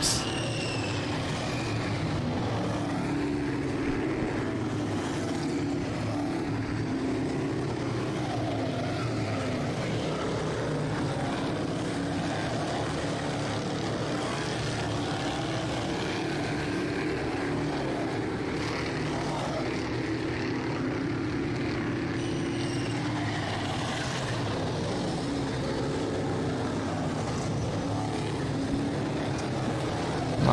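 Engines of a pack of Sportsman-class dirt modified race cars running laps, a steady drone whose pitch rises and falls gently as the cars go around the oval.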